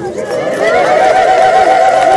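A crowd of Ethiopian women ululating (ililta) for the celebration. It is a high, rapidly trilling call held at one pitch, with a lower trilling voice beneath it, starting about half a second in.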